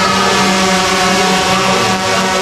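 Quadcopter drone flying close by, its propellers making a loud, steady buzzing whine whose pitch wavers slightly.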